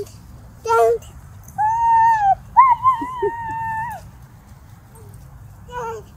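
Beagle puppy whining in two high, steady calls, the first starting about one and a half seconds in and the second longer, lasting about a second and a half.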